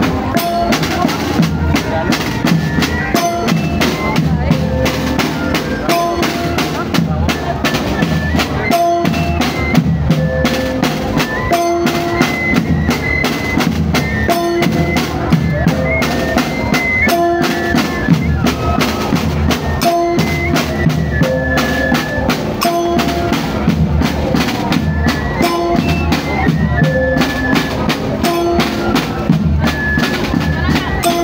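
Marching drum band playing: a dense, continuous rhythm of snare drums and bass drums with cymbals, and a melody of held, stepping notes on small flutes over the drumming.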